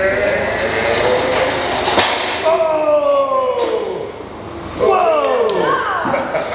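A young child's voice making two long, drawn-out calls, each falling in pitch, the second starting about five seconds in. A single sharp knock about two seconds in.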